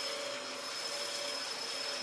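Vacuum cleaner running steadily: a constant motor hum with a steady high whine.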